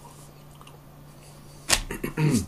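Quiet room tone with a steady low hum, then a sudden loud burst of noise near the end.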